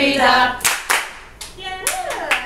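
A small group of women singing a nursery rhyme, breaking off into sharp hand claps: two in quick succession under a second in, and another near the end alongside a short high vocal sound.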